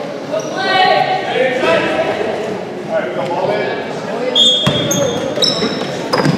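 Indistinct voices of players and spectators echoing in a gymnasium, with a few short, high squeaks of sneakers on the hardwood court a little past the middle.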